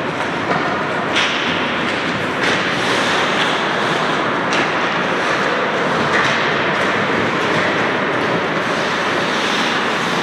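Many hockey skates scraping and carving on rink ice, a steady rasping noise, with a few sharp clacks of sticks on the ice.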